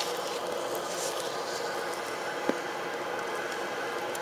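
Steady, even hiss of background noise in a vehicle cab at night, with one short click about two and a half seconds in.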